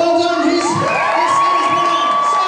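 Crowd of children shouting and cheering together, several voices holding a long shout that rises about a second in and stays on one note.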